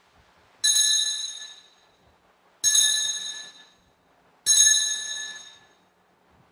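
Altar bells rung three times, about two seconds apart, each ring bright and high and fading within about a second, marking the elevation of the consecrated host.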